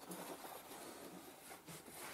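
Faint handling noise: fingers taking the freshly soldered sensor wires out of a helping-hands clamp, with light rustling and a few small soft taps.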